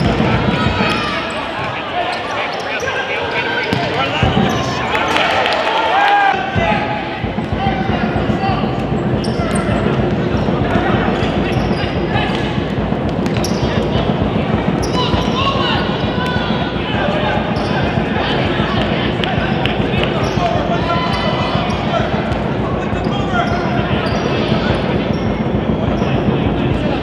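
A futsal game in a gymnasium: players and onlookers keep shouting and calling, over the thuds of the ball being kicked and bounced on the hardwood court.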